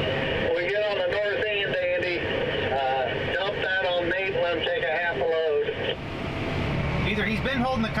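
A voice talking, thin and narrow as through a two-way radio, for most of the first six seconds, over the steady drone of farm machinery engines. The engine drone grows louder near the end.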